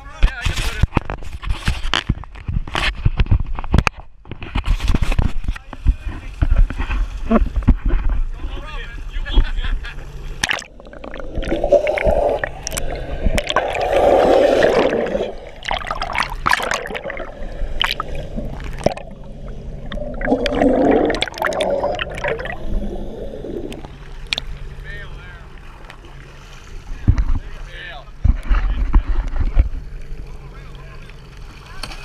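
Seawater splashing and gurgling around a camera dipped over the side of a boat, with many sharp knocks and splashes and stretches of muffled underwater rushing.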